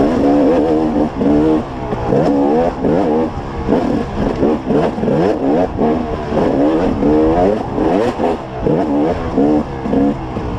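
Dirt bike engine revving hard up and down as it is ridden over rough trail, its pitch rising and falling with each throttle opening about once or twice a second.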